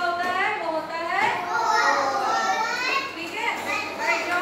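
Young children's voices talking and calling out together, several high voices overlapping.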